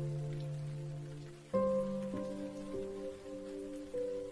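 Slow piano music holding sustained chords, with a new chord struck about a second and a half in and single notes added after it, over a steady sound of falling rain.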